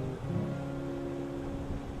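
Acoustic guitar background music: a chord struck just after the start and left ringing.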